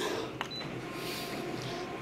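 A click and a short high beep from a multifunction copier's control panel as its Start key is pressed, then the copier's steady mechanical running with a faint whine as the print job starts.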